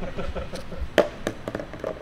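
A plastic frisbee landing with a sharp clack on paving about halfway through, among a few lighter taps, with laughter.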